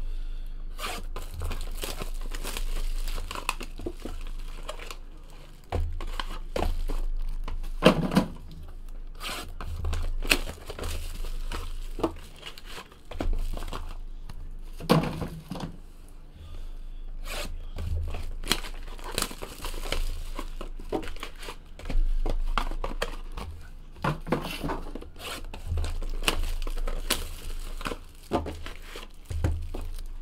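Sealed trading-card boxes being torn open by hand: cardboard and wrapper tearing and crinkling, with scattered knocks as boxes and packs are handled on the table.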